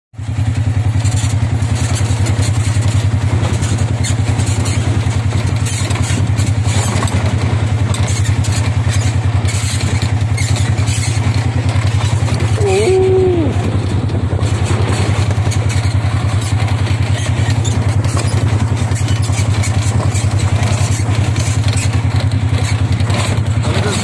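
Polaris side-by-side's engine running at a steady, unchanging speed on a rutted dirt track, with scattered knocks and rattles from the bumpy ride.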